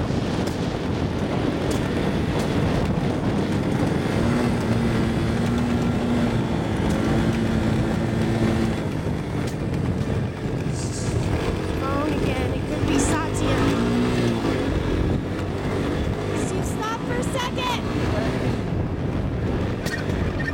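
Honda ATC three-wheeler's single-cylinder engine running while the machine is ridden along a dirt road, its pitch holding steady for a few seconds and then shifting as it slows and speeds up.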